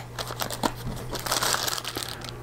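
Packaging being handled: a small cardboard box opened by hand and plastic-bagged parts pulled from it, crinkling with many small crackles, busier in the second half.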